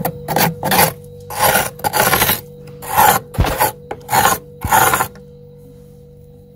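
Thick frost build-up on a freezer wall being scraped off with a spoon: about eight rough, rasping strokes in quick succession, stopping about five seconds in.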